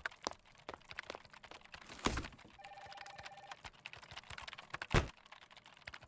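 Office adding-machine keys clicking faintly and irregularly, with two louder clunks about two seconds in and near the end, and a brief faint tone in the middle.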